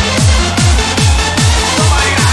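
Hands-up dance track in a continuous DJ mix: a fast four-on-the-floor kick drum, about two and a half beats a second, under sustained synth lines.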